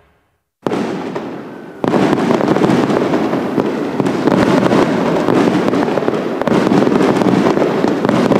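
Fireworks crackling densely and continuously, with many rapid pops. The sound starts suddenly about half a second in and gets louder a second later.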